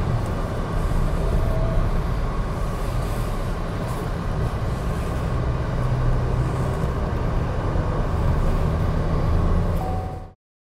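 MG Astor SUV driving at speed on a race track: a steady engine drone mixed with road and tyre noise, the engine note strengthening midway and again near the end.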